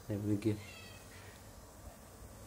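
A man's brief wordless vocal sound, then a faint, short, high squeak that falls slightly, about a second in.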